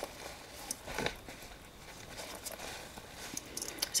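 Faint rustling of a cloth bag and books being handled, with a few soft knocks, one about a second in and a couple just before the end.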